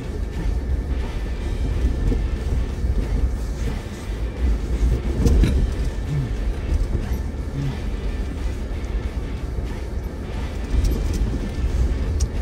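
Cabin noise of a Jeep crawling slowly over a rocky wash: a steady low engine and drivetrain rumble with tyres grinding on loose rock. Music plays quietly underneath.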